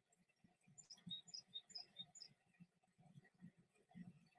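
Faint bird chirping over near silence: a quick run of short high notes about a second in, falling in pitch in little groups of three, repeated about four times.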